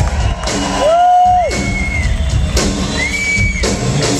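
Live rock band playing, with a few long high held notes over the band that swoop up into pitch and bend down at the end, and some cheering from the crowd.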